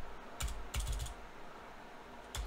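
Computer keyboard typing: a handful of quick keystrokes within the first second.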